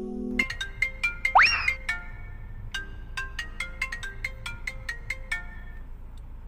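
Mobile phone ringtone: a melody of short, plinking notes, with a quick rising slide about a second and a half in.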